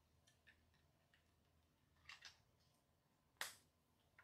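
Near silence with a few faint clicks, a soft double knock about two seconds in, then one sharp knock about three and a half seconds in, as a plastic drink bottle is handled and set down.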